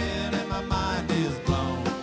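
Live bluegrass band music, with banjo and mandolin picking among the strings.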